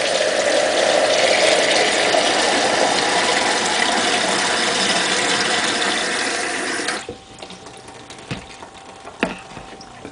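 Water running from a brass hose nozzle into a tall plastic CD spindle container, filling it. The flow is shut off suddenly about seven seconds in, followed by a few light clicks and knocks.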